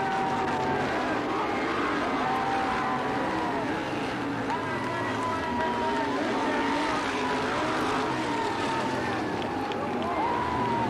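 Several sprint car V8 engines racing around the track, their pitch holding and then falling away as cars pass, over crowd noise.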